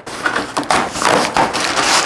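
Plastic bag crinkling and rustling as it is handled and lifted out of a cardboard box, with an irregular crackle.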